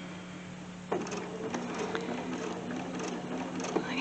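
Bernina 770 QE sewing machine starting to stitch about a second in, then running steadily with a fine, even ticking.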